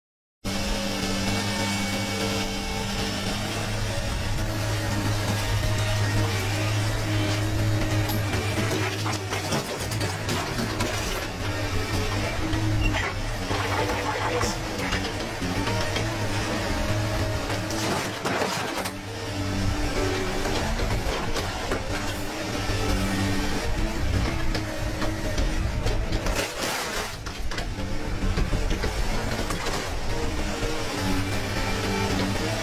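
Background music over a tracked excavator working, with a few sharp crashes of metal as its car-dismantling claw grips a scrap car.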